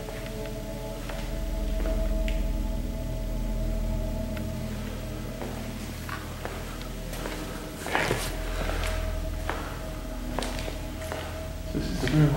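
Low ambient drone music of steady held tones that slowly swell and fade, with a few footsteps and handling knocks, clustered about eight seconds in.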